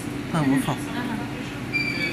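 Steady low machine hum of running laboratory equipment, with a brief murmur of a voice about half a second in and a high electronic beep starting near the end.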